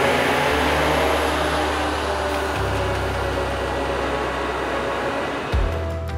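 Background music with steady bass notes, over the running and tyre noise of a Grimme Ventor self-propelled potato harvester driving past on a road, loudest near the start and slowly fading.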